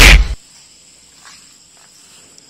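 A brief, loud burst of noise at the very start, then the steady, high-pitched chirring of crickets in the background.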